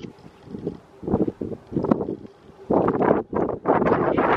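Wind buffeting the microphone in irregular gusts, starting about a second in and growing stronger and more continuous near the end.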